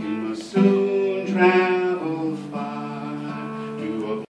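Acoustic guitar strumming chords, with a fresh strum about half a second in and another a little after a second, the chords ringing on between strokes.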